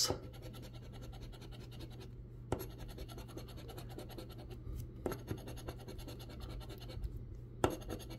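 A coin scraping the coating off a scratch-off lottery ticket: faint, continuous rapid scratching with a few sharper clicks.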